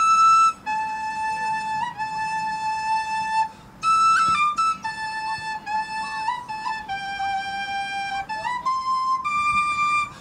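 A lone flute playing a slow melody: held notes joined by quick grace-note flicks, with short breaks for breath between phrases.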